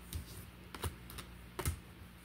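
Deck of tarot cards being shuffled by hand: a few light, scattered clicks as the cards knock together.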